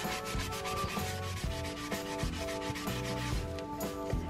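Wet sponge scrubbing a soaped kitchen sink to lift rust stains: a steady, rhythmic rubbing. Background music plays under it.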